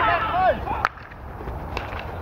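Players' shouted calls, then a single sharp crack a little under a second in: a field hockey stick striking the ball. After it there is a lower, steady background with a faint knock.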